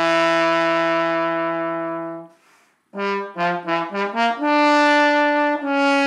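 Solo trombone: a long held note that fades away about two seconds in, a short pause, then a quick run of about six short notes leading into another long held note, which steps down slightly near the end.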